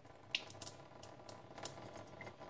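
Warm water from a nasal rinse pot running out of a nostril and dripping into the sink, heard as a few faint, irregular drips and ticks.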